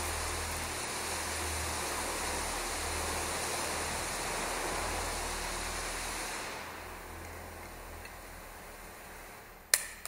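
A steady rushing noise with a low hum, fading away about two-thirds of the way through; near the end, one sharp snap of side cutters cutting through a nylon zip tie.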